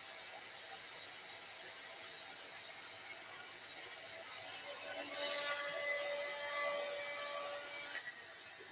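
Handheld heat gun blowing steadily. It gets louder from about five seconds in, with a steady whine from its fan motor.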